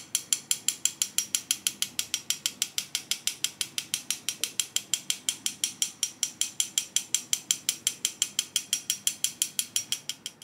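A small metal sifter dusting matcha powder, clicking rapidly and evenly, about six clicks a second, each with a light metallic ring.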